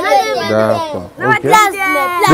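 A group of children's high voices chanting a short repeated phrase together, with a brief break a little past one second.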